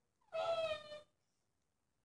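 One short, high-pitched vocal cry, falling slightly in pitch and lasting under a second.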